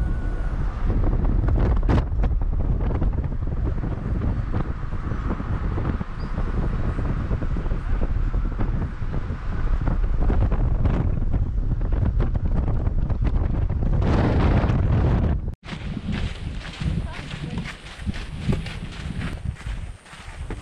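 Wind buffeting the camera microphone, a dense low rumble. After a sudden cut about three-quarters of the way through it gives way to lighter, gusting wind noise.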